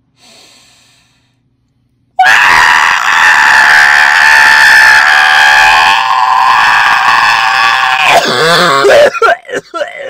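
A person screaming at full voice, starting about two seconds in and held for about six seconds. The scream wavers and cracks as the breath runs out, then breaks into short gasps near the end.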